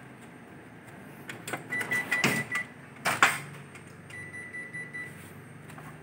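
Ricoh MP 8001-series office copier humming steadily, with a few sharp clacks as its front-section parts are handled and electronic beeps from the machine: a short broken beep, then one long beep lasting about a second.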